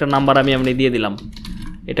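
Computer keyboard typing: a quick run of keystrokes starting about halfway through.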